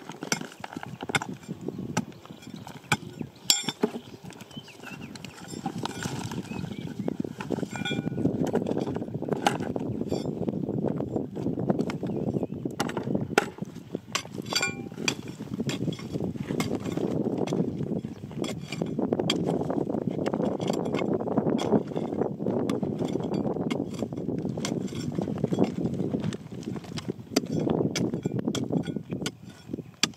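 A hand-held metal digging bar striking and prying into stony ground: repeated sharp knocks and clinks of metal on rock, over a continuous scraping of gravel and soil that grows louder after about six seconds.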